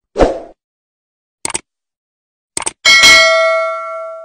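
YouTube subscribe-button animation sound effect: a short rush of noise, two quick sets of mouse-like clicks, then a loud bell ding that rings on and fades away.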